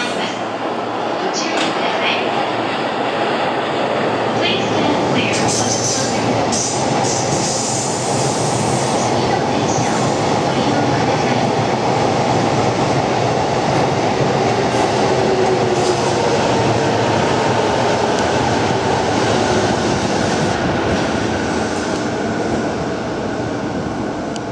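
JR East E233-series 0-subseries electric commuter train running past, a continuous rumble of wheels on rails that swells through the middle and eases off near the end.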